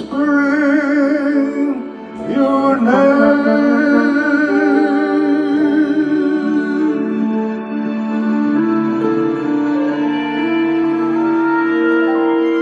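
A ballad: a singer holds two long wordless notes with wide vibrato in the first few seconds, over a sustained accompaniment. After that the voice falls away and the backing carries on in long held chords that change every second or two.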